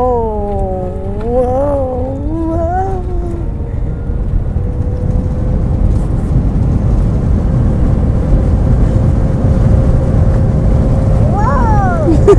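Jet airliner cabin noise during landing: a low rumble that grows steadily louder, with a faint steady engine hum. Over the first few seconds a drawn-out, wavering voice is heard, and another short one near the end.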